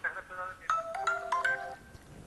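Mobile phone ringtone playing a short melody of marimba-like notes, four or five notes in quick succession after the first half-second.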